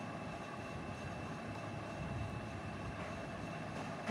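Steady background hum and hiss, unchanging, with a faint high steady whine above it.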